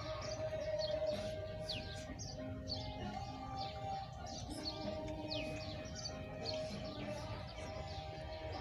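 Birds chirping: many short, quick, falling chirps scattered throughout, over soft background music with long held tones.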